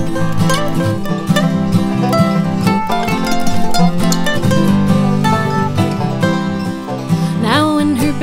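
Instrumental break of an acoustic bluegrass-style string band song: plucked strings carry the tune in quick, busy notes over a steady bass.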